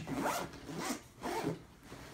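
Zipper on a fabric magazine pouch of a soft rifle case being pulled shut, in a few short strokes in the first second and a last one about a second and a half in.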